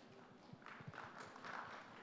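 Faint, sparse clapping from an audience in a large hall, with a few soft taps.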